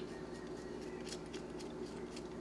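Sugar sprinkled from a measuring spoon onto cut squash in a stainless pan: faint, scattered light ticks of grains and spoon over a steady low hum.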